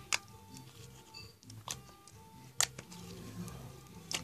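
Fingers poking slime in a plastic tub during a poke test: a few soft, sharp clicks, faint against a quiet background with faint music.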